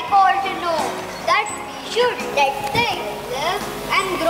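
Children's voices on stage making a string of short calls that rise and fall in pitch, over quiet background music.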